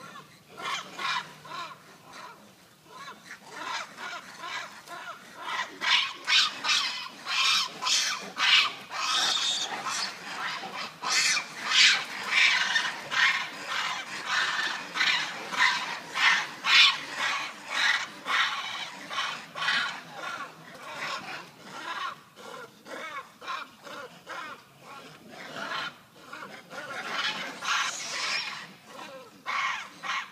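Rhesus macaques calling over and over in short, harsh bursts during a clash between two troops. The calls come thick and fast through the middle and flare up again near the end.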